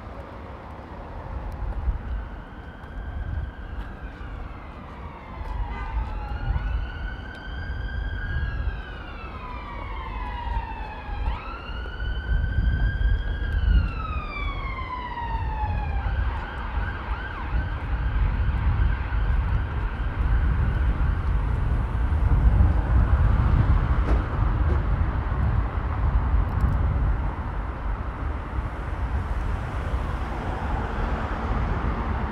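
Emergency vehicle siren on a slow wail: three rise-and-fall cycles of about four to five seconds each, climbing quickly, holding, then sliding down. It cuts off suddenly about halfway through, leaving steady city traffic noise and wind rumble on the microphone.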